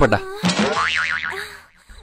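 A comic sound effect: a springy, warbling tone whose pitch wobbles quickly up and down for about a second, then fades out.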